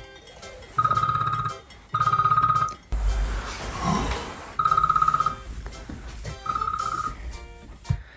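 Mobile phone ringing: an electronic buzzing tone sounding in four short bursts, each under a second long.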